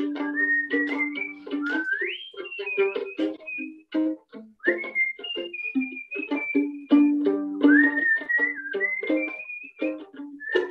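A man whistling a melody, sliding up into its phrases, while plucking little chords pizzicato on a violin held like a guitar, a few chords a second.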